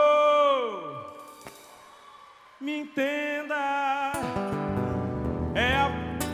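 Live band music with a male singer: a long sung note falls in pitch and fades out about a second in, followed by a brief lull. Short vocal phrases come in, then the band plays on under more singing.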